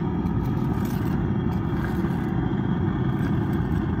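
Steady low roar of a metal-melting furnace's burner running under a pot of molten aluminium, with a few faint clicks.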